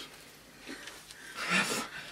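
A quiet pause in a small room. About one and a half seconds in, a person makes a short breathy sound: a breath or a brief hum.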